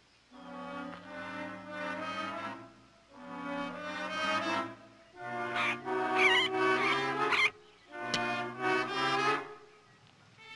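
Dramatic orchestral film score: held brass and string chords in four swelling phrases separated by short pauses, with a brief sharp click about eight seconds in.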